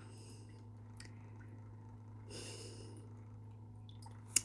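Quiet room with a steady low hum, and a person's soft breath about two and a half seconds in.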